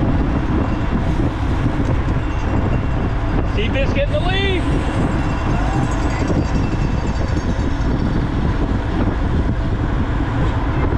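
Steady rush of wind and tyre hum on a bike-mounted camera riding in a pack of road cyclists. About four seconds in, a brief cluster of short, high chirping sounds.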